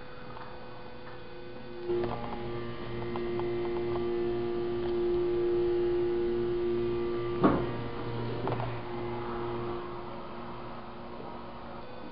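Steady electric hum of a hydraulic elevator's pump machinery. It swells with a thump about two seconds in, holds a steady tone, and has a sharp click about seven and a half seconds in before easing off.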